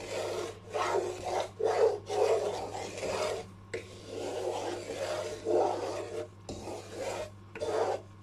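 Wooden spatula scraping and stirring semolina around a kadhai, in repeated strokes one after another, as the suji is roasted in desi ghee for halwa.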